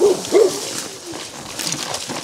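A horse walking along a dirt trail through dry brush: hoof steps and rustling, with a brief low call from a rider about a third of a second in.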